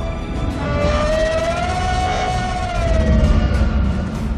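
Film action soundtrack with a heavy low rumble, over which one long wailing tone rises slightly and falls away, from about a second in until shortly before the end.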